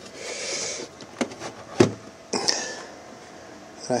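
Cables being handled and plugged into a computer's ATX power supply: rustling and a couple of sharp plastic clicks, the loudest a little before the middle.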